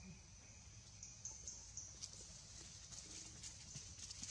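Faint outdoor ambience with a steady, high-pitched insect buzz that grows stronger and pulses from about a second in, over a low rumble and a few faint clicks.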